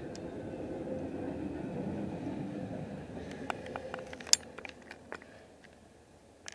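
Freight train cars rolling past, a steady low rumble that fades over the first three seconds. It is followed by a string of sharp clicks and knocks, the loudest about four seconds in.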